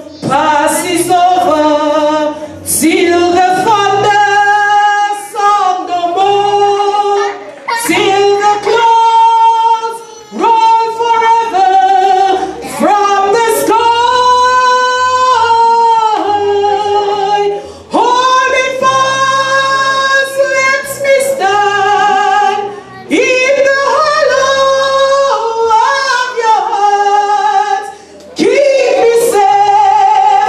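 A woman singing a song solo into a handheld microphone, amplified, in phrases with long held notes and short breaks between them.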